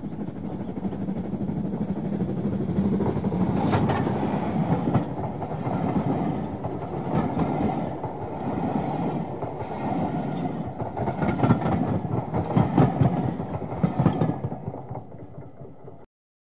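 A train passing close by: continuous running rumble of carriages with repeated clicks of wheels over the rails. It fades out near the end.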